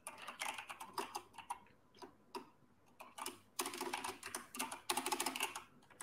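Typing on a computer keyboard: quick, irregular key clicks in bursts, with a lull about two to three seconds in and a fast, dense run near the end.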